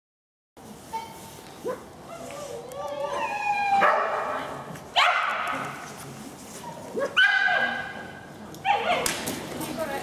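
Dogs barking and yipping with whining in between. Sharp barks come about five, seven and nine seconds in and echo in the large hall.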